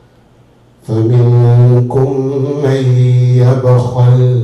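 A man's voice chanting on one steady low pitch. It starts about a second in and is held for about three seconds with a few brief breaks.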